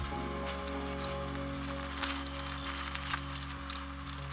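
Background music with a steady low beat, over light clinks and rustles of a screwdriver and hands working at a CPU tower cooler inside a PC case.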